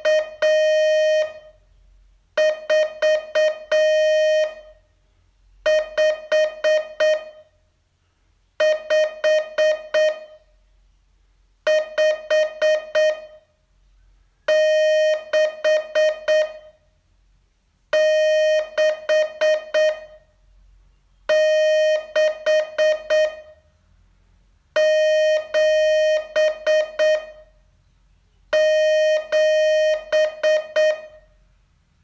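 Morse code practice tone keyed in dits and dahs: one short group of characters, about two seconds long, sent over and over with a pause of about a second between repeats, nine times in all. A steady medium-pitched beep that starts and stops cleanly with each element.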